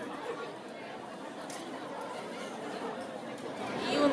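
Indistinct chatter of many voices, a background hubbub of a crowded room, growing a little louder near the end.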